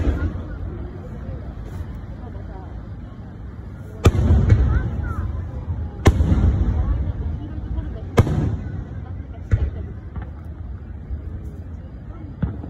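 Aerial firework shells bursting overhead: four loud bangs about two seconds apart from about four seconds in, then a few fainter ones, each followed by a long low rumble.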